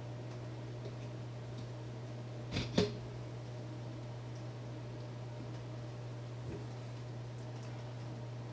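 A metal desk-lamp arm knocking as its post is set into the table clamp: a short double knock about two and a half seconds in and a faint tap near the end. A steady low hum runs underneath.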